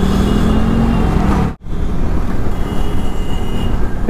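Motorcycle riding noise from the rider's position: a KTM 390 Adventure's single-cylinder engine running in slow traffic with a steady drone. It cuts off abruptly about a second and a half in, then gives way to steady engine and wind noise at road speed.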